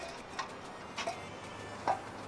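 Three light clicks and taps as a sutli bomb firecracker is handled against the chrome end of a Royal Enfield Bullet silencer.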